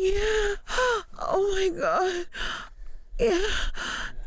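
A woman's breathy, sensual moans and gasps: about five in a row with short pauses between, some held on one pitch and some sliding up or down.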